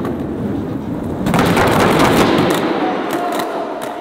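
Skateboard with eight wheels (doubled trucks) rolling on the skatepark deck. About a second in comes a burst of sharp clacks and rattling from the board and wheels that then eases back to the rolling rumble.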